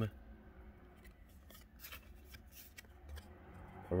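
Faint handling of baseball cards: short scrapes and slides of card stock against card stock as cards are laid on a pile and the next is picked up, a few of them clustered around the middle.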